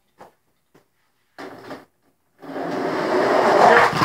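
Die-cast toy monster trucks rolling down a ramp and across the floor toward the camera. A few faint clicks come first, then, about halfway through, a rattling rolling noise that grows louder as the trucks approach.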